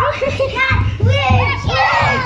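A toddler's high voice squealing and vocalising on sliding pitches, with a woman's voice, while they ride down an enclosed tube slide, over an uneven low rumble.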